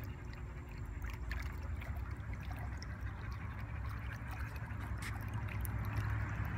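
Steady low hum with trickling water, from a swimming pool's circulation running.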